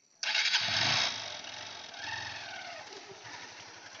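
Motorcycle engine starting suddenly about a quarter second in, loud for about a second, then settling into steady running with a rise and fall in pitch around two seconds in as the bike pulls away.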